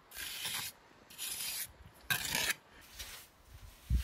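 A trowel scraping and smoothing wet mortar over stone in three strokes of about half a second each, the third the loudest. A short dull thump comes at the very end.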